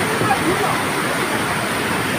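A mountain stream cascading over rocks in a small waterfall: a steady, loud rush of water.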